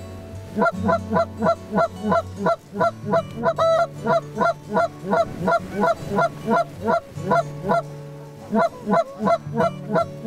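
Geese honking over and over, about three short honks a second, as a flock circles in to the decoys, with a steady low drone underneath.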